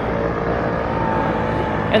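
Street traffic: a motor vehicle running by with a steady low drone and a faint engine hum.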